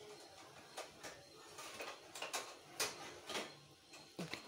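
Faint, irregular soft ticks and clicks of soaked sago pearls being squeezed and pressed together in oiled hands, about seven across a few seconds.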